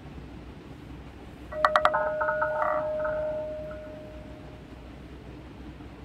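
Short electronic chime from an online roulette game: a few quick clicks over a chord of tones, with one tone held and fading away over about three seconds.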